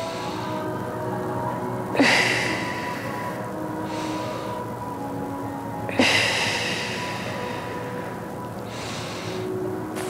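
Slow, deep breathing through a long stretch, with the two strongest breaths starting sharply about two and six seconds in and fading away. Quiet background music with sustained notes plays underneath.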